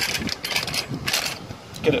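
Clicks and small metallic rattles of a handheld box-opening tool being fiddled with as its safety catch is worked loose.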